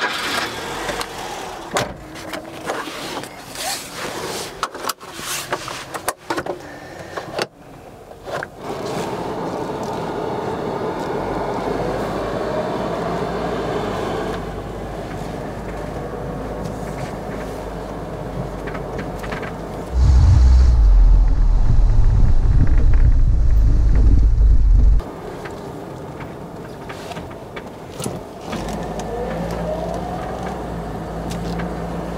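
1982 Peugeot 505 GR Estate's two-litre four-cylinder petrol engine heard from inside the cabin, pulling away and accelerating, its pitch rising as it picks up speed. It is broken by clicks and knocks in the first several seconds. Just past the middle a loud low rumble comes in for about five seconds and cuts off abruptly.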